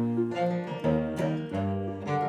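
Acoustic guitar and ukulele playing a short instrumental passage between sung lines, plucked notes coming about twice a second over low sustained notes.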